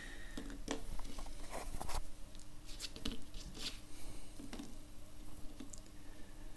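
Light handling sounds: scattered soft taps and rustles of fingers pressing a small glued fabric cushion onto a miniature wooden chair.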